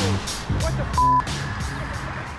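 A sports car spinning out on the road, its engine and tyres heard under background music with a steady beat. A single short, steady, high beep sounds about a second in.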